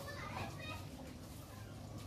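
Faint, distant voices in the background over low ambient hum, with no clear foreground sound.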